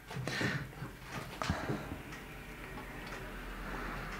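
Soft rustling of shredded cheese as fingers scoop it from a ceramic bowl and scatter it over a lasagna. A few light clicks come in the first second and a half.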